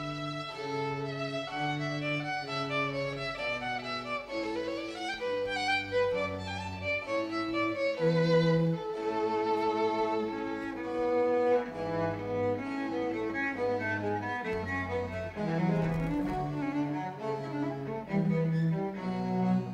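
Instrumental music for bowed strings: a violin line over a cello bass, moving in held notes of about half a second to a second each.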